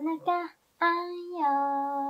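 A woman's voice singing a gentle children's-style baby-massage song, the words 'onaka, onaka, anyo' (tummy, tummy, legs): two short notes, then one long held note that steps down in pitch about halfway through.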